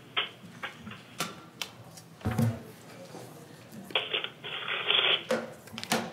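Scattered sharp clicks and rustling, with a low thump a little after two seconds and a denser stretch of rustling around four to five seconds.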